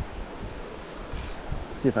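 Steady rushing of a small mountain stream flowing over rocks; a man's voice starts near the end.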